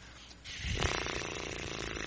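Breath blown between loosely parted lips: a rush of air that, just under a second in, turns into a steady buzzing lip trill once the breath is fast enough to set the lips vibrating.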